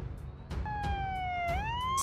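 Emergency vehicle siren sounding about half a second in, its pitch sliding slowly down and then rising sharply near the end.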